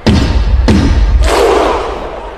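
Loud sound-effect hits in a podcast intro: a heavy booming impact at the start, a second hit about two-thirds of a second later, then a loud rush of noise that eases off near the end.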